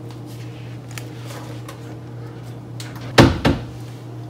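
Two sharp knocks about a third of a second apart near the end, over a steady low hum and a few faint clicks.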